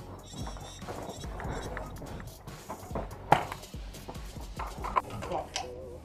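Footsteps and gear movement of airsoft players on dirt and snow: irregular soft steps and knocks, with one sharp knock about three seconds in, over a low steady rumble.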